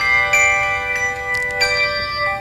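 Handbell choir ringing chords of handbells, the notes sustaining and overlapping; new chords are struck about a third of a second in and again a little past the middle.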